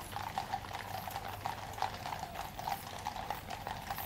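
Shod hooves of several cavalry horses walking on a paved road, a steady stream of overlapping, irregular clip-clops.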